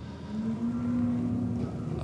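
A man's drawn-out hesitation sound mid-sentence, a single held hum at one steady pitch lasting about a second and a half.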